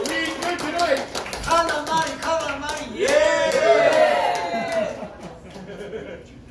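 A small audience clapping and cheering, with whooping and laughing voices over the claps; the applause dies away about five seconds in.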